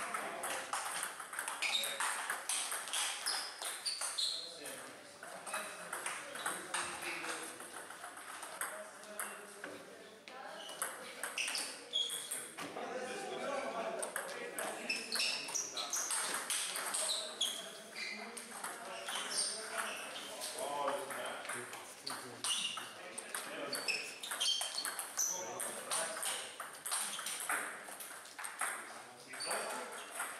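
Table tennis ball clicking back and forth off bats and the table through several doubles rallies, short sharp ticks at a quick, uneven pace with brief gaps between points.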